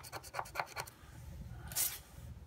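Scratch-off lottery ticket being scratched with a flat scraper: rapid short strokes, about eight a second, through the first second, then a brief louder swipe near the end.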